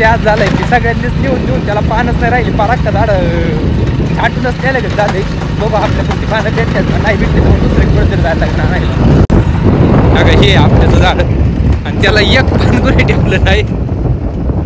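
A man talking close to the microphone over a steady low rumble of wind buffeting the microphone.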